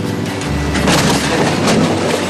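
A ride-on lawn mower crashing over a riverbank into shallow water: a loud, noisy crash and splash from about a second in, under the song's instrumental backing between sung lines.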